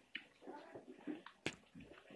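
Wet chewing and mouth sounds of someone eating juicy Indian mango slices, with a sharp click about one and a half seconds in.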